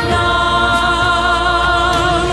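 Stage music: voices holding one long sustained choral chord over instrumental backing.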